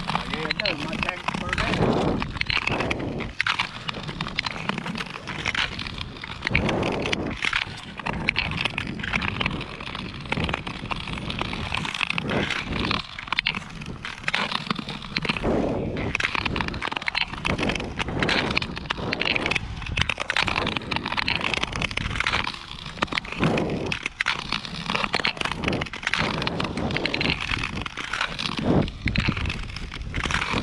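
Long-distance ice skates on natural lake ice: the blades scrape and hiss across the ice in repeated strokes, with crackling scratches.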